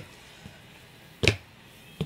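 One sharp smack a little over a second in, from a sneaker stamping on a hardwood floor, with a faint tap about half a second in.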